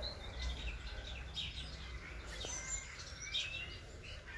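Faint bird chirps from outside, a few short high calls and one rising whistle near the end, over low steady background noise.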